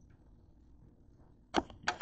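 Two sharp knocks close together near the end, after a quiet stretch: a hand handling and repositioning the camera.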